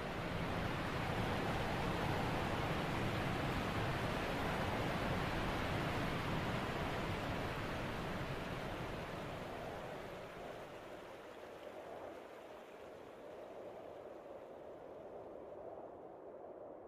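A soft, even rushing noise that swells up at the start, holds, and fades down over the second half.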